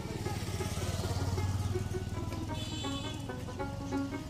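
Background music with a plucked-string melody. Under it a motor vehicle passes close by: a low engine rumble with road hiss that swells over the first second and a half and fades out about three seconds in.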